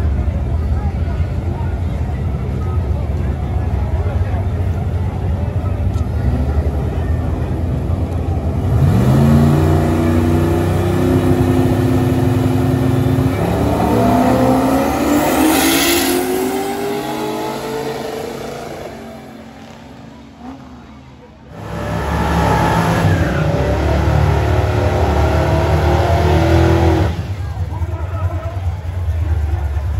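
Drag-racing cars' engines at full throttle: about nine seconds in, an engine note climbs steadily in pitch, and a second climb follows a few seconds later as the cars pull away down the strip. The sound fades, then breaks off abruptly and returns as loud engine noise from cars at the start line, over crowd voices.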